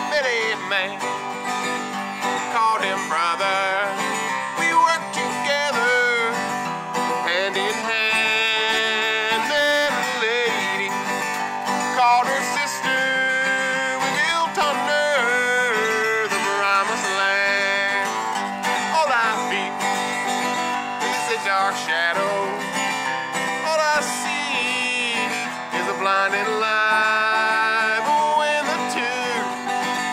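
Steel-string acoustic guitar strummed steadily, with a man's voice singing or vocalising over it in long, wavering notes.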